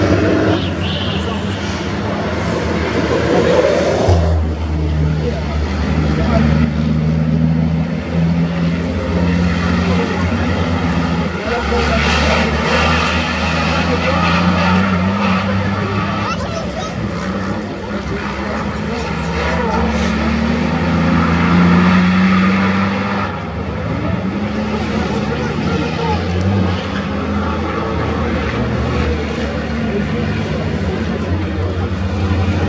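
Racing trucks' diesel engines heard across the circuit: a continuous low engine drone whose pitch rises and falls as the trucks accelerate and change gear.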